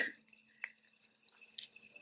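Lemon half squeezed by hand, its juice dripping into a metal measuring spoon: a soft click, then faint scattered small drips and squishes.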